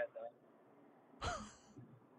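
A man's short, breathy sigh about a second in, after a brief word of speech; faint background hiss otherwise.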